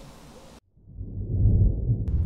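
Faint outdoor background, a brief moment of dead silence, then a deep, low thunder-like rumble that swells up about a second in as a sound effect.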